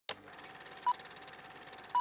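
Two short, high electronic beeps about a second apart over a faint hiss, at the opening of an Afrobeat instrumental.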